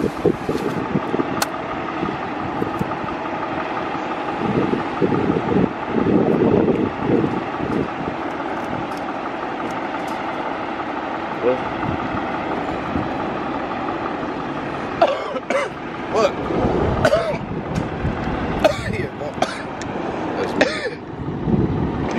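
Steady hum of vehicle engines and traffic, with indistinct voices in the last several seconds.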